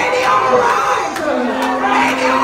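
Raised voices in wordless praise: a woman calling out through a microphone while an audience shouts along, with a held note starting about one and a half seconds in.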